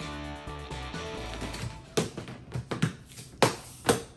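Background music that stops about a second and a half in, followed by several sharp plastic knocks and clunks as a clear plastic storage bin is handled and its lid is set on and pressed down, the loudest knock a little after three seconds.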